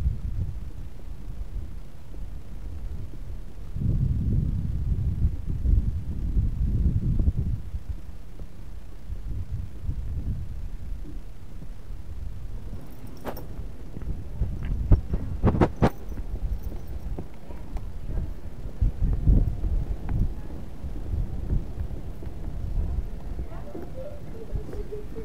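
Wind rumbling on the microphone, rising and falling in gusts, with a few sharp clicks a little past the middle.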